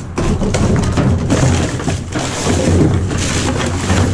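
Rummaging through dumpster trash by hand: a steady run of clattering knocks and thuds as plastic bottles, cardboard and metal car parts are shifted about.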